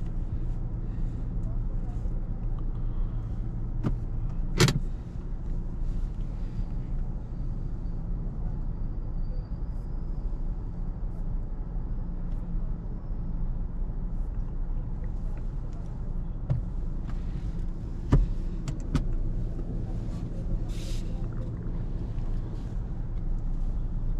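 A Kia Cerato's engine idling steadily, heard from inside the cabin, with a few sharp clicks: one about five seconds in and two close together near the end.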